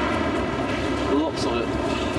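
Steady mechanical hum and rumble of airport baggage-handling machinery, with indistinct voices in the background.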